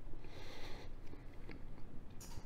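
A man faintly chewing a mouthful of smoked sirloin tip roast, with a soft breath early on and a small click about one and a half seconds in.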